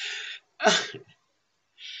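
A woman's short nonspeech vocal burst about half a second in, sharp at the onset and falling in pitch, with a soft breath before it and another near the end.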